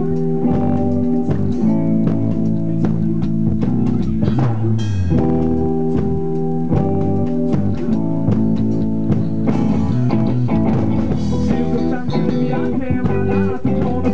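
Live rock band playing an instrumental passage: distorted electric guitar chords over a drum kit, loud and steady.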